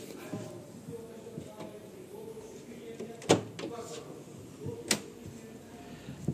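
Rear door of a Mercedes-Benz Sprinter 315 CDI van being unlatched and swung open, with two sharp clacks about three and five seconds in.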